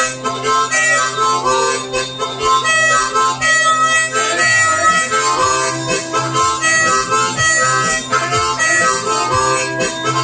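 Harmonica played in cupped hands: a continuous instrumental passage of changing notes and chords.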